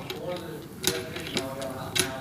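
Faint, off-microphone speech in a meeting room, with a sharp click a little before the middle and another at the end.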